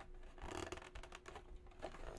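Hands handling a cardboard carton of drink cans, a faint, irregular run of scratches, rubs and small clicks of fingers and flaps on the cardboard.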